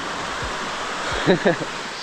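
Steady rush of a tall, thin horsetail waterfall falling into its pool, with a short burst of voice about a second and a half in.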